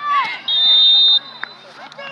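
Referee's whistle: one steady, high blast of about three-quarters of a second, blown to call a foul and stop play. A short shout comes just before it.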